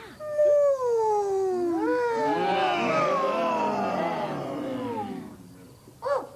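A group of Muppet monster voices giving a long, wordless call together, several voices overlapping and sliding down in pitch for about five seconds.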